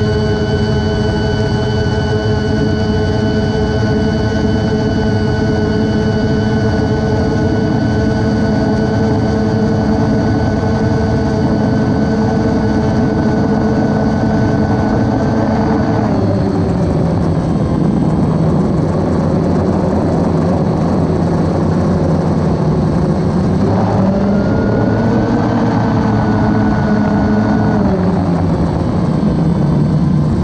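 DJI Phantom quadcopter's motors and propellers whining, heard close up from the camera carried on the drone. The steady multi-tone whine drops in pitch about halfway through. It rises again for a few seconds and drops once more near the end as the throttle changes.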